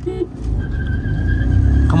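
A short beep right at the start, then a car launching at full throttle, heard inside the cabin of a VW 1.0 TSI: a loud low rumble builds steadily, with a steady high whine over it.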